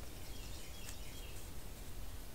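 Faint birdsong, a few thin high calls in the first second or so, over a steady low outdoor background noise.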